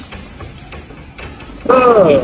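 Faint scattered clicks and crackles, then, about three-quarters of the way in, a man's voice breaks into a loud, drawn-out laugh.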